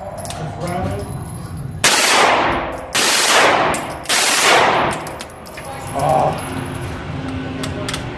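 CZ Scorpion Evo 9mm submachine gun firing on full automatic: three roughly one-second bursts back to back, starting about two seconds in, echoing in an indoor range.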